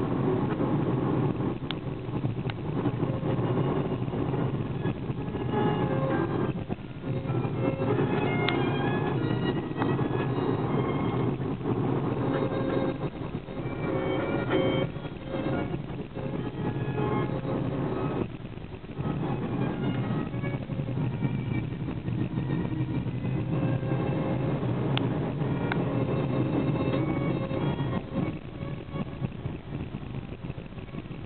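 Steady engine and road noise heard from inside a moving car's cabin, with music playing more faintly underneath.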